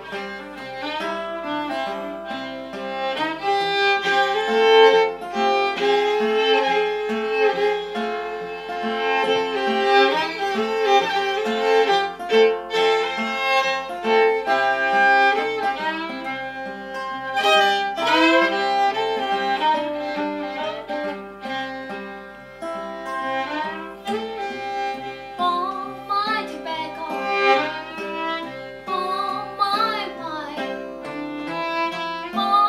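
Fiddle playing the melody over an acoustic guitar accompaniment with a steady, evenly repeating bass, an instrumental break in a traditional American folk song.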